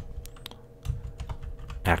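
Typing on a computer keyboard: a run of separate key clicks at uneven spacing, as a text-editor command is keyed in.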